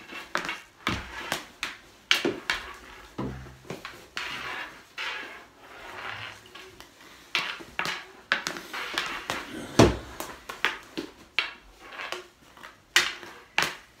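Street-hockey shooting practice: irregular sharp clacks and knocks of hockey sticks and balls hitting a hard floor and goalie gear, the loudest hit about ten seconds in.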